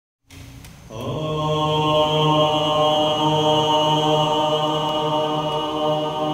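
Group chanting of a single long, steady held note, starting about a second in.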